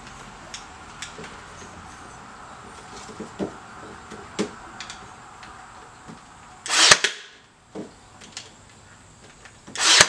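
Ryobi cordless nail gun firing twice, about three seconds apart, each shot a short sharp burst. Before the shots come light clicks and knocks as the gun is handled and set against the wood.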